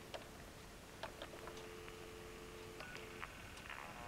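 Faint telephone dial tone heard from a handset's earpiece: two steady tones sounding together. It breaks off briefly about a second in, returns, and stops near the end, with a few soft clicks as the handset is handled and its keypad pressed.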